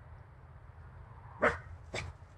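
English cocker spaniel giving one short, loud bark about one and a half seconds in, followed by a shorter, weaker yelp at the very end.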